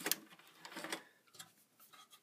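A few faint clicks and rustles, mostly in the first second or so, from power-supply cables being handled inside a metal computer case.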